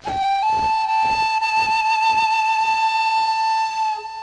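Music: a flute plays a short note, then steps up and holds one long high note, over soft, evenly spaced drum beats that die away.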